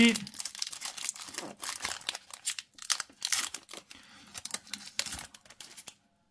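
A foil Yu-Gi-Oh! booster pack being torn open by hand and crinkled, a dense run of irregular crackles and rustles that stops near the end.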